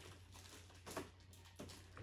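Near silence, with faint rustling of plastic wrap and a few small clicks as hands work a stuck body pin loose on an RC truck.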